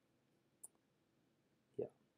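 Near silence: quiet room tone with a single faint sharp computer click about a third of the way in, then a brief low vocal sound near the end.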